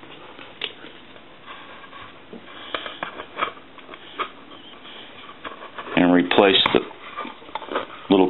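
Light knocks, scrapes and rubbing from handling a wooden duck telephone as it is turned over and its base plate is fitted, with a few words spoken about six seconds in.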